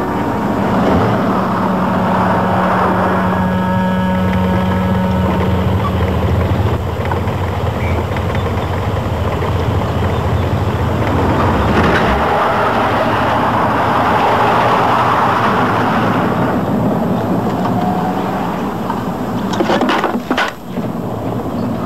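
A car driving along a dirt road: its engine running steadily under a constant wash of tyre and road noise, changing in character about twelve seconds in.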